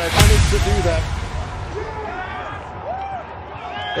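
Live rugby match sound from the field: a heavy thud as the maul goes to ground, then players shouting over a background of noise. A referee's whistle starts near the end, awarding the try.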